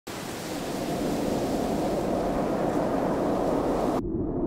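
Steady rushing wind noise that slowly grows louder, its high hiss dropping away suddenly at the very end.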